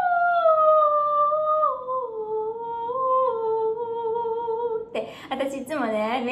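A woman singing one long wordless 'ahh' in a high voice, stepping slowly down in pitch and holding it for about five seconds, then breaking off into a laugh near the end.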